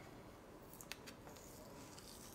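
Faint rustle of a kraft-paper gift tag being handled, with a few light clicks about a second in as fingers pick at the price sticker on it.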